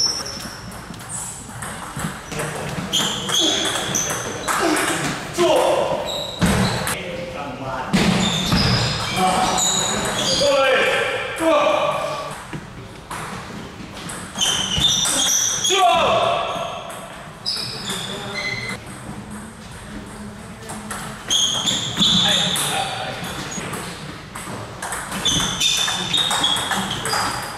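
Table tennis rallies: a plastic table tennis ball clicking back and forth off bats and the table in a series of quick taps, with pauses between points and voices in the background.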